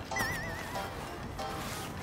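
Light background music with a short wavering, warbling high-pitched sound effect near the start, a comic effect edited into the soundtrack.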